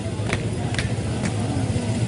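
Mourners beating their chests (matam) in unison, sharp slaps about two a second, over a steady low hum and crowd noise.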